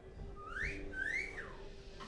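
A person whistling twice: two short whistles, each sliding up in pitch and falling back down, the second one longer, over a faint steady hum.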